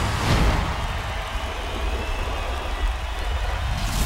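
Intro sound effect: a low, steady rumble with a hiss over it, with a brief whoosh just after the start.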